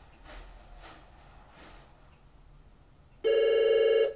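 An office desk telephone starts ringing about three seconds in: a loud electronic ring with a rapid warble, after a few faint soft noises.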